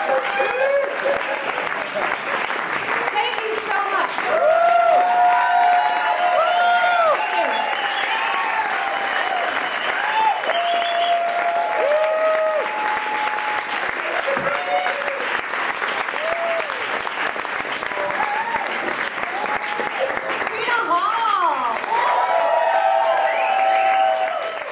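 Audience applauding steadily, with voices calling out and cheering over the clapping.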